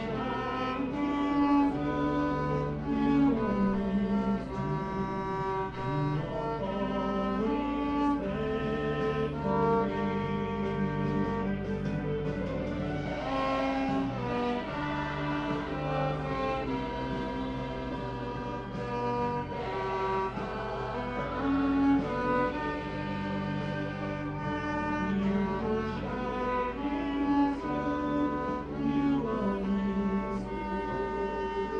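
Octo fiddle, a large low-pitched bowed fiddle, playing a slow melody in long held notes, often with several notes sounding together.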